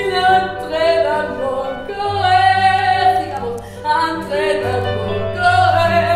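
A woman singing a melody in a high voice, holding notes with vibrato, over a steady low accompaniment.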